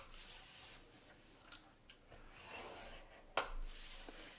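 Stylus scoring cardstock along the grooves of a Simply Scored scoring board, a soft scraping in faint stretches, with one sharp tap near the end.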